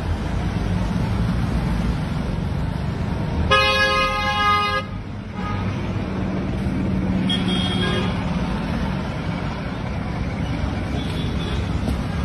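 Road traffic running steadily, with a vehicle horn sounding once for just over a second about three and a half seconds in.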